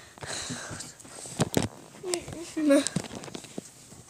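Handling noise from a handheld camera being moved about: soft rustling, then two sharp knocks close together about a second and a half in. A child's voice makes a few short, quiet sounds a little later.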